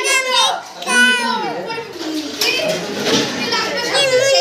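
Several people talking over one another in high-pitched voices.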